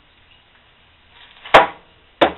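A small salvaged printer stepper motor set down on a workbench: light handling noise, then a single sharp knock about one and a half seconds in.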